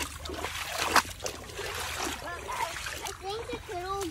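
Footsteps splashing through shallow creek water, with one sharp splash about a second in. In the second half a young child's voice rises and falls over the water.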